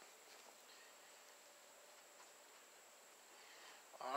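Near silence: faint outdoor background hiss with a thin, steady high-pitched tone.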